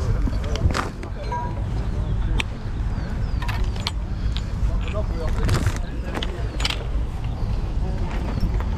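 Low rumble of wind buffeting the microphone and rustle of the camera being carried while walking, with scattered clicks and knocks throughout.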